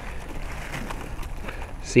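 A hand pressing into and sweeping across snow on a car, scraping and crunching through an icy crust left on it by freezing rain and sleet. The sound is an even, gritty scrape with small ticks running through it.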